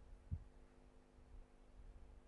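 Near silence: room tone with a faint steady hum and a single soft low thump about a third of a second in.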